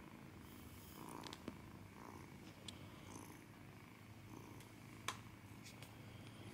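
Ginger Persian kitten purring softly and steadily, with two faint clicks, one about a second and a half in and one near the end.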